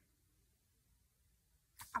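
Near silence: quiet room tone, until a sudden sound and a woman's voice start near the end.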